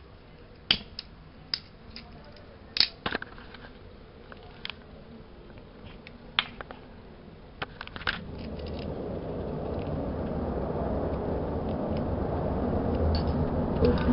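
A disposable lighter clicking several times, then from about eight seconds in a steady rushing noise of flames that grows louder: deodorant-soaked talcum powder catching fire and burning in a small plastic container.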